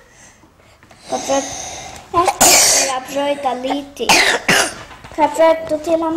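Voices talking at a table, broken by two loud, sudden coughs about two and a half and four seconds in.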